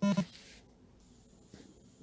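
A man's voice ending a word at the very start, then a pause of near silence with faint room hiss.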